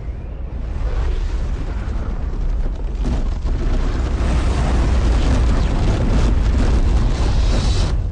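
A dense rush of explosions over a heavy rumble, building for several seconds with rapid blasts in the second half and cutting off abruptly at the end.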